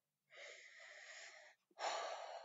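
A person's long, quiet breath in, then a louder sigh out starting near the end.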